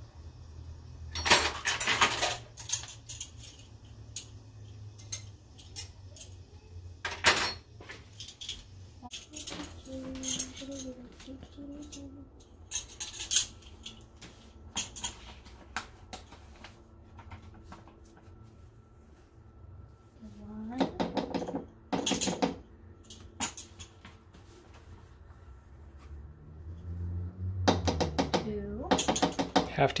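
Metal measuring spoons on a ring clinking and rattling against each other and the counter as flour is scooped and levelled: a scattered series of sharp clicks, the loudest cluster in the first couple of seconds.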